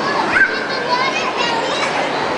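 Many young children's voices chattering and calling out at once: the steady busy din of children at play, with a short rising high call about half a second in.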